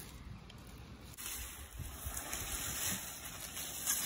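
Faint outdoor background noise with wind on the microphone and a few soft low bumps.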